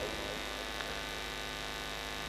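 Steady electrical mains hum: a low, unchanging drone with a row of evenly spaced overtones.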